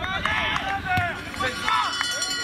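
Raised voices shouting and calling across an outdoor football pitch, with one sharp knock about a second in.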